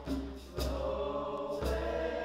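High-school chorus singing a traditional Zulu song in close harmony, holding chords that change about half a second in and again past the middle.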